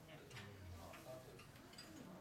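Near silence: the faint room tone of a quiet restaurant dining room, a low murmur of distant voices with a few light ticks.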